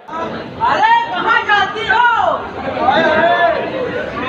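Speech: loud voices of people talking and chattering over one another, with no other clear sound.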